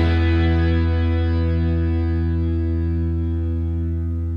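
Acoustic guitar's final strummed chord left ringing, fading slowly with no new notes as the song ends.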